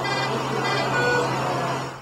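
Steady hum and hiss of background machinery or room ventilation, with a brief faint tone about a second in.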